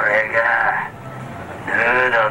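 A man's voice through a handheld megaphone, in two loud, tinny wordless bursts with a wavering pitch: one at the start, the next near the end.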